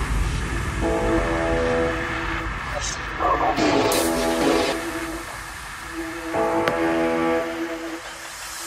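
Background electronic music in a quieter break: held synth chords in phrases with short gaps between them and no steady beat.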